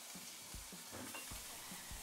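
Raw beef mince sizzling faintly in a frying pan as it is dropped in, with a few soft thumps.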